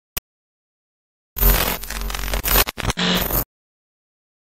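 A single click, then after a second of dead silence a loud burst of harsh, distorted noise over a deep bass. The burst stutters out twice and cuts off abruptly after about two seconds, like a glitch-effect edit in the soundtrack.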